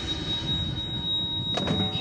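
A steady high-pitched electronic tone, a heart-monitor flatline effect played over the band's sound system, held unbroken while the ringing tail of the band's big hit fades.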